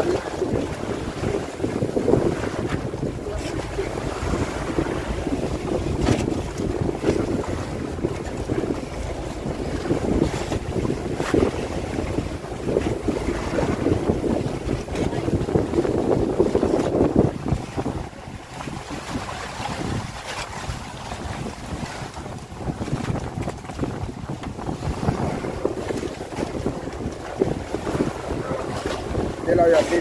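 Wind buffeting the microphone over open sea water sloshing around a bamboo outrigger boat: a steady, rough rush that eases a little about two-thirds of the way through.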